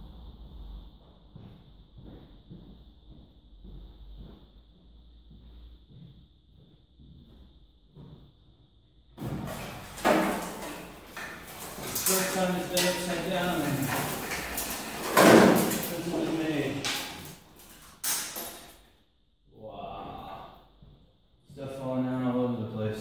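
Stripped Austin-Healey 3000 steel body shell being rolled over on a rotisserie: faint clicks at first, then from about nine seconds in a loud stretch of metal creaking and clanking as it turns, loudest about fifteen seconds in.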